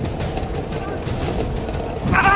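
Golf cart driving away on its own, a steady low running sound under background music.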